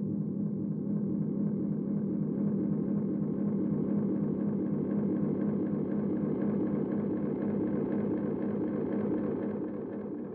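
Tape-delay pedal with its feedback turned up, fed by an electric guitar: the repeats pile up into one sustained, steady drone that grows brighter over the first few seconds as the knobs are turned.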